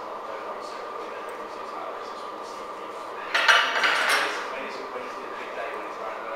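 Steady gym background din, broken about three seconds in by a sudden loud metal clatter of weights lasting about a second.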